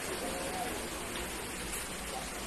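A steady rushing hiss.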